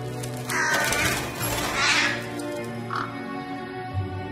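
Orchestral film score from the series, in sustained held chords, with louder harsh calls over it about half a second in and again about two seconds in, and a shorter one near three seconds.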